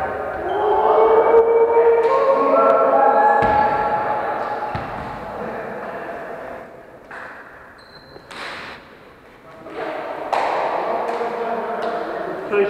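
A volleyball thudding twice, a few seconds in, amid players' shouts and chatter in a large gym hall. It goes quieter for a few seconds, with a few sharp clicks, and then the voices pick up again near the end.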